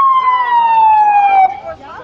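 A single loud high tone with strong overtones, sliding slowly down in pitch for about a second and a half and then cutting off.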